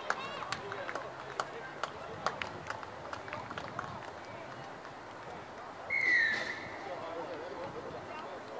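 Running footsteps and thuds on the grass, then one short referee's whistle blast about six seconds in, its pitch dropping slightly, with voices of players and onlookers around it.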